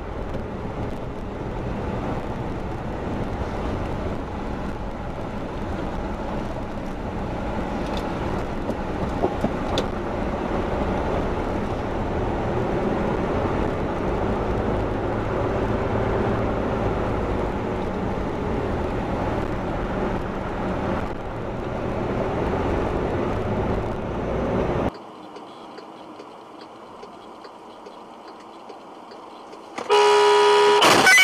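Steady engine and road noise of a vehicle driving, recorded from its dashcam. About 25 seconds in, the sound cuts to a much quieter, thinner hum.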